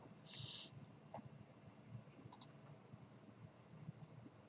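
Faint computer mouse clicks over quiet room tone, two of them in quick succession about two and a half seconds in. A brief soft hiss comes just after the start.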